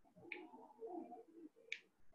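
Faint bird calls, with two short sharp clicks about a second and a half apart.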